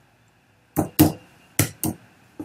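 Four keystrokes on a computer keyboard, sharp clicks starting about three-quarters of a second in, two close pairs, as a score is typed into a document.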